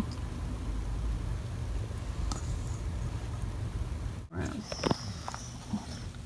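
A dog at a steel bowl of soaked kibble, over a steady low rumble. After a cut about four seconds in, a metal spoon clinks and scrapes in the steel bowl as the food is stirred.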